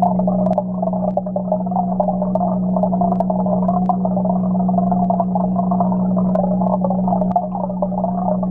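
Steady low hum of aquarium equipment heard through the water by a submerged camera, with a wavering, muffled tone above it and a few faint clicks.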